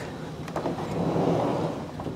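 A wooden door being pushed open: a scraping swish that swells and fades over about a second and a half, with a low steady hum underneath.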